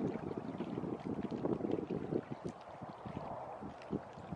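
Wind buffeting the microphone outdoors: an uneven, low rumble in irregular gusts that eases off over the few seconds.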